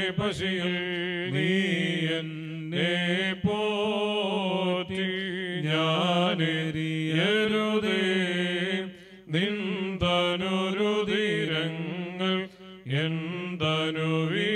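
Male clergy chanting a funeral hymn through a microphone and loudspeaker, the melody held and sliding between notes, with short breaths about nine and twelve and a half seconds in.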